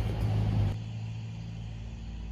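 A motor vehicle engine running steadily, a low hum like nearby street traffic. Less than a second in, the sound drops abruptly in level and loses its hiss, leaving the steady low hum.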